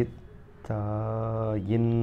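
A man's low voice holds a long drawn-out tone at one level pitch. A second, shorter one follows near the end.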